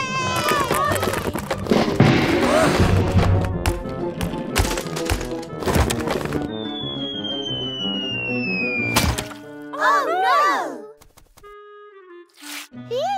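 Cartoon sound effects over background music as a toy chain-reaction track collapses: a run of knocks and clatters, then a long falling whistle ending in a single impact about nine seconds in.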